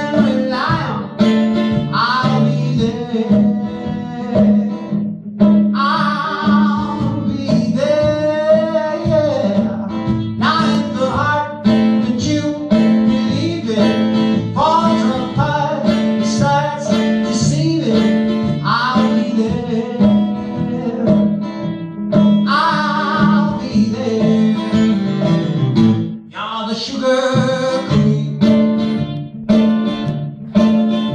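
A man singing, with wavering vibrato on held notes, while playing an acoustic guitar.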